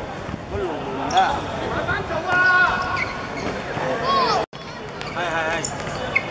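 Players shouting and calling during a five-a-side football game, with thuds of the ball being kicked on the hard court. The sound drops out for a moment about four and a half seconds in.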